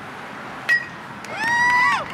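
A metal baseball bat striking the ball with a sharp ping and a brief ring. About half a second later, a long high-pitched shout follows.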